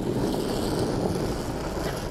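Granite curling stone sliding across the pebbled ice with a steady low rumble, with brooms brushing the ice ahead of it.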